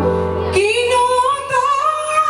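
A woman singing live with a band: about half a second in her voice glides up into a long held note with vibrato, over a sustained chord from the band.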